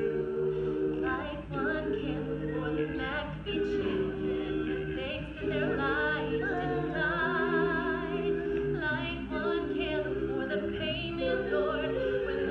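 Mixed a cappella vocal group of men and women singing in close harmony, holding long sustained chords, with vibrato in the upper voices partway through.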